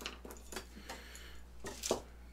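A few light clicks and taps of small hardwood sticks and tools being handled on a workbench, with a sharper clack near the end as a combination square is picked up.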